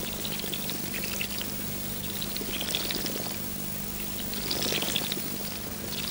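Water pouring from a garden hose onto plants and soil, splashing that swells every second or two.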